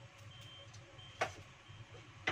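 Gas stove burner running faintly under a wok of cooking oil that is still heating, with a few faint short high beeps and a single sharp click about a second in.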